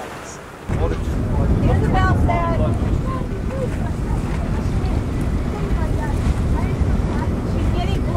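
Wind buffeting the microphone, starting suddenly under a second in, over the wash of choppy sea water. Faint voices call out about two seconds in and again near the end.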